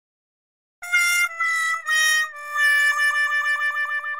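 Comic 'sad trombone' sound effect: three short notes stepping down, then a long lower note that wobbles and fades out.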